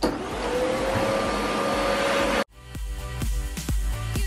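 Canister vacuum cleaner running on a rug, its motor whine rising slightly in pitch, then cut off abruptly about two and a half seconds in. Background music with a steady beat follows.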